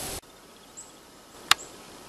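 Faint background hiss with a couple of faint, high, brief chirps, and a single sharp click about one and a half seconds in.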